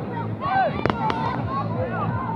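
Two sharp firework bangs in quick succession about a second in, over a crowd of young voices shouting.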